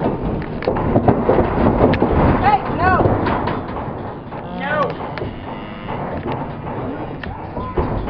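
Wind buffeting the microphone in a dense, steady rumble, with short high-pitched yips from a dog in two quick bursts, about two and a half and about four and a half seconds in.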